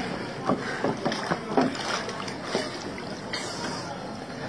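Water sloshing and splashing around a scuba diver moving chest-deep in a shallow canal, in a run of irregular small splashes.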